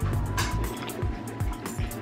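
Background music with a regular low beat.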